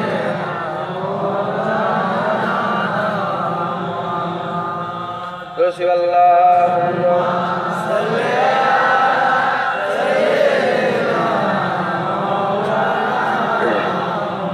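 A voice chanting a devotional Islamic refrain in long, drawn-out melodic phrases, with a short break and a click about five and a half seconds in.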